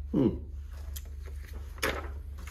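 Handling of a plastic sliding paper trimmer and a sheet of paper on a cutting mat: faint light clicks, then one sharp click near the end, over a steady low hum.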